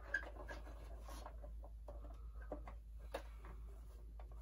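Faint handling noise from a vintage Kenner Slave-1 hard-plastic toy ship being turned over in the hands: light rubbing with a few small sharp clicks of the plastic parts.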